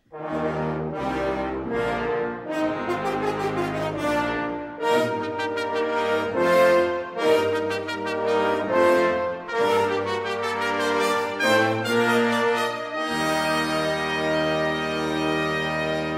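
A brass ensemble of trumpet, trombone, French horn and tuba playing a slow passage of chords over deep bass notes. It ends on a long held chord in the last few seconds.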